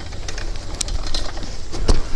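Bicycle riding over a dirt trail, picked up by a phone strapped to the rider: a steady low rumble of jostling and tyre noise with scattered sharp clicks and knocks, and one loud knock near the end.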